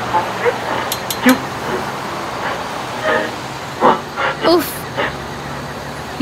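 Car radio giving only static: a steady hiss with scattered crackles and brief broken fragments, no station coming in because there is no signal. Under it, the steady drone of the car running, heard inside the cabin.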